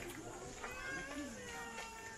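A small child's high-pitched, drawn-out wordless call, starting just over half a second in and lasting about a second and a half.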